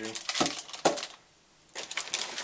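Unboxing handling noise: a few sharp clicks and a knock as a camera battery in a plastic blister pack is put down on a desk, then rustling of packaging inside a cardboard box near the end.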